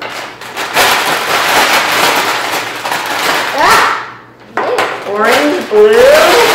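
Plastic markers rattling and clicking inside a crumpling paper bag as the bag is shaken. A voice breaks in near the end.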